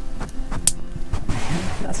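A single sharp click as a Wago lever connector's lever is snapped down onto a wire, followed by a short rustle of the wires being handled.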